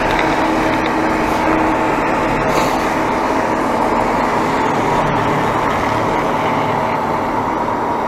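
Steady, loud rushing hiss of fan-type snowmaking guns running, with a faint constant hum under it.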